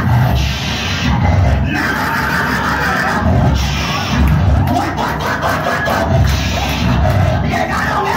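A man praying loudly into a handheld microphone through an amplifier, his voice coming out as rough, distorted bursts with heavy low-end breath blasts, while other people in the room call out.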